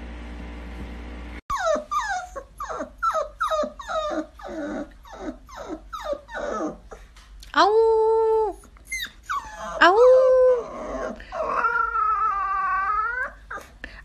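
Husky puppy giving a quick run of about a dozen short yips, each falling in pitch, then three drawn-out "awoo" howls, the last one wavering up and down.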